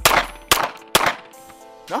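Archon Type B 9mm pistol firing three shots in quick succession, about half a second apart.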